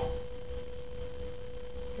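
A steady tone held on one mid-high pitch, with a faint low background noise beneath it.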